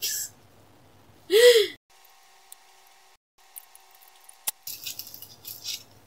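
A woman makes a short wordless voiced sound about a second and a half in. About four and a half seconds in there is a sharp click, followed by crinkling and small clicks as scissors and plastic packaging are handled.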